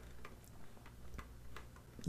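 About five faint, sharp clicks spaced a few tenths of a second apart from a computer mouse being operated, over a low steady background hum.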